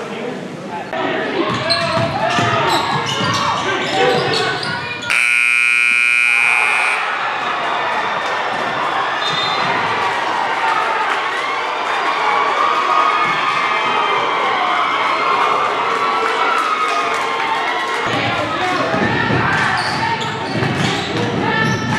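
Gym scoreboard buzzer, one steady two-second blast about five seconds in, the loudest sound here, over crowd chatter and basketballs bouncing on the hardwood floor.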